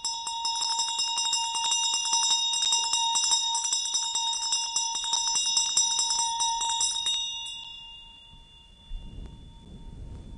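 Vajrayana hand bell (ghanta) rung rapidly, its clapper striking many times a second over a steady metallic ring; the strikes stop about seven seconds in and the ring fades away. A soft low thump near the end as the hands come down to the altar table.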